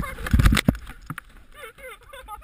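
Heavy thuds and rumble on a GoPro action camera during a snowscoot ride, loudest in the first half-second or so. They are followed by several short, high, rising-and-falling voice yelps in quick succession.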